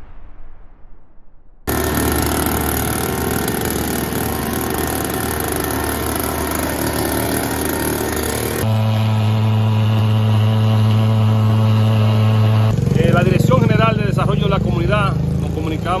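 Small two-stroke engine of an Echo backpack mist blower running steadily at high speed while spraying insecticide mist. About halfway through, the sound cuts to a lower, even engine hum, and a voice talks over it near the end.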